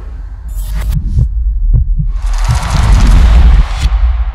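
Bass-heavy sound design for an animated logo sting: a deep throbbing low pulse under a few sharp hits, then a swelling whoosh that rises and cuts off abruptly near the end.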